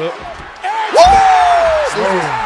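A heavy slam of a wrestler hitting the ring mat about a second in, followed at once by a man's long drawn-out shout that falls slightly in pitch.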